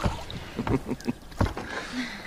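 Oars working a rowboat through water, with a low knock at each stroke about every three quarters of a second.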